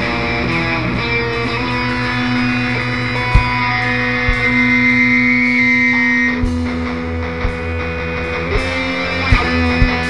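Live rock band playing a wordless passage: electric guitars hold long sustained notes over bass, with a few sharp drum hits.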